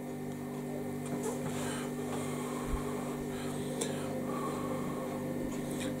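Steady electrical buzz from a freezer: a hum made of several evenly spaced tones, with faint eating sounds over it.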